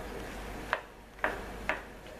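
Wooden spatula knocking against a nonstick pan while stirring olives in tomato sauce: three light clicks about half a second apart, over a faint steady hiss.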